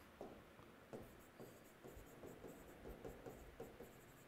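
Marker pen writing on a whiteboard: faint, short, irregular strokes as a word is written out.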